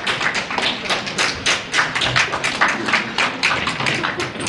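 Audience clapping, a quick run of sharp claps at about five a second.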